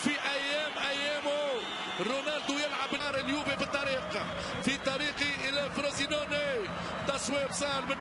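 Television football commentator speaking excitedly over steady stadium crowd noise, with some words drawn out long.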